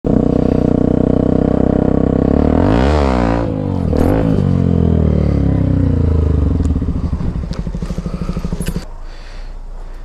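Yamaha dirt bike engine running close to the microphone. Its revs dip and swing up and down around three to four seconds in as the bike slows, then it runs unevenly at low revs and falls silent about nine seconds in.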